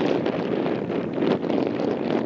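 Wind buffeting an outdoor camera microphone: a steady, fluttering rumble with no clear events.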